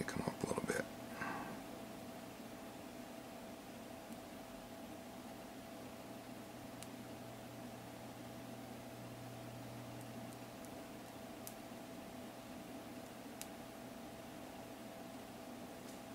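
Quiet room tone with a steady low hum, a cluster of small handling clicks and rustles in the first second or so, then only a few faint ticks.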